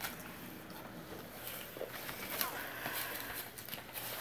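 Quiet eating sounds: forks working noodles on plates, with a few faint clicks and taps.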